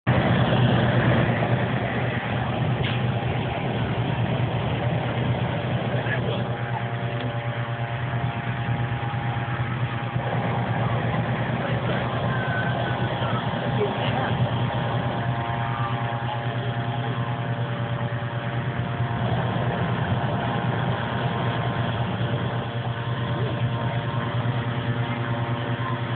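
Engine-driven balloon inflator fans running steadily, blowing air into the envelopes as they are inflated on the ground, with a steady low drone. A higher steady tone from a second engine joins about six seconds in and drops out briefly twice.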